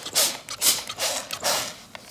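Cotton fabric and printed interfacing being folded and smoothed by hand on a mat: four short rustles about half a second apart.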